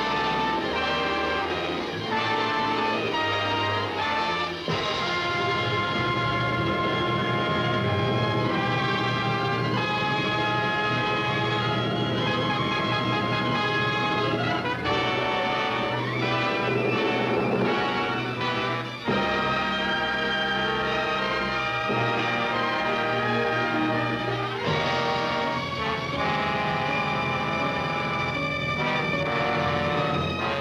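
Orchestral film score with prominent brass, playing continuously as the dramatic opening music of a 1940s Republic action serial chapter.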